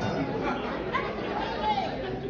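Guests chattering in a large hall: several overlapping, indistinct voices at moderate level.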